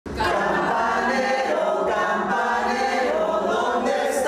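A group of older adults singing together unaccompanied, holding long notes that shift in pitch.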